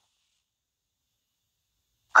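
Near silence: a gap in the soundtrack with no audible sound.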